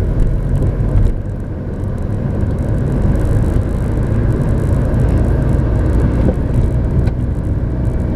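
A car driving along a street, heard from inside its cabin: a steady low rumble of engine and road noise.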